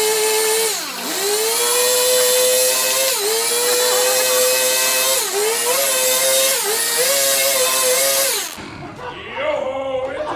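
Stihl chainsaw running at high revs while carving a log, its pitch dipping briefly four times as the chain works into the wood, then stopping about a second and a half before the end.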